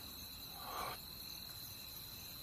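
Faint background ambience with a steady high-pitched insect chirr, as from crickets, and a soft brief sound just before the first second.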